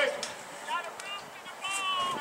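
Distant voices calling and shouting across the field in short high-pitched bursts, with a couple of faint sharp clicks.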